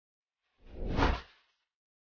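A single whoosh transition sound effect, swelling to a peak about a second in and fading away quickly, with a deep low rumble under it.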